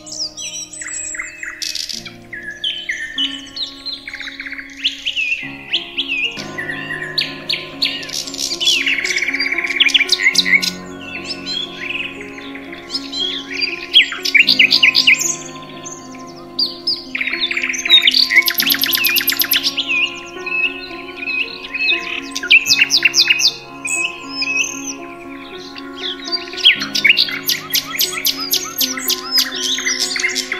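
Many songbirds chirping, whistling and trilling in a dense chorus over soft background music of held chords that change every few seconds. A fast trill stands out about eighteen seconds in, and another comes near the end.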